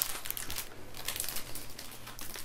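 Plastic candy packaging crinkling as it is handled, in faint, irregular crackles.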